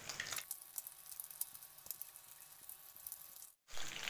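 Whole boiled eggs sizzling softly in hot oil in a pan, a fine steady crackle. The sound breaks off for an instant near the end.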